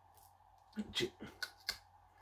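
Hard sesame-seed brittle crunching as it is chewed: a quick run of sharp cracks starting under a second in and lasting about a second.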